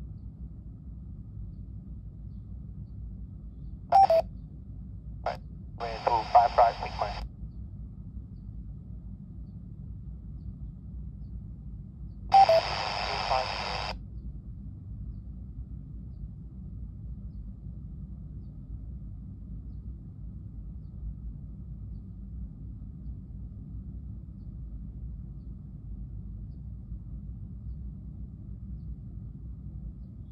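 Yaesu FT-60 handheld receiving AM airband while scanning: short bursts of radio transmission with hiss and snatches of unclear voice, about four seconds in, briefly again near six seconds, and once more near twelve seconds, each cut off abruptly by the squelch. Between the bursts only a low steady hum is heard.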